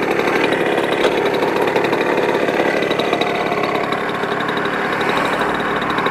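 Simson Star moped's 50 cc single-cylinder two-stroke engine idling steadily with the bike at a standstill.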